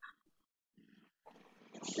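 A quiet pause on a video call: faint open-microphone room noise with a brief low murmur, then a child's voice starting to answer at the very end.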